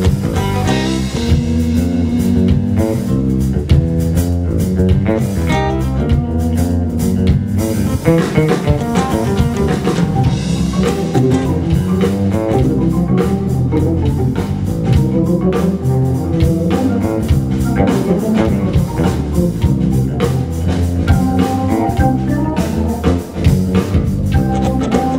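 Live band playing an instrumental rock arrangement: guitar, bass and drum kit, with a keyboardist playing organ-style keyboards. The music runs without a break.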